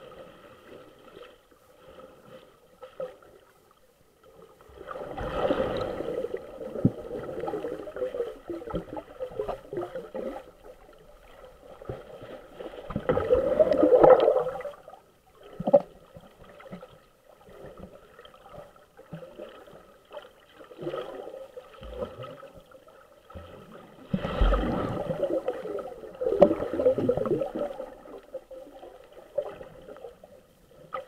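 Muffled water swishing and gurgling around an underwater camera, with three louder surges: one about five seconds in, one around the middle and one near the end.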